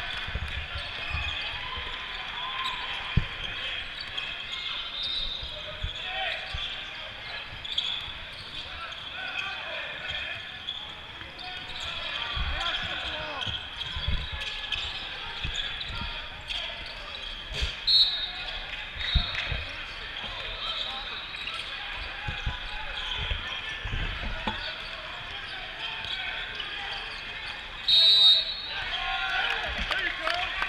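Basketball bouncing and being dribbled on a modular plastic sport-court floor: irregular dull thumps, with players and spectators talking in a large hall.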